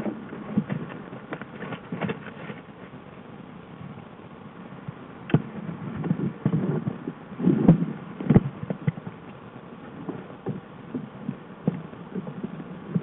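A black bear moving about in a tangle of sticks and brush: irregular rustling, snapping twigs and dull knocks, busiest and loudest around the middle of the clip.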